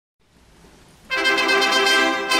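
A concert wind band attacks a loud, brass-led chord about a second in, after a quiet start, and holds it: the opening of a concert pasodoble.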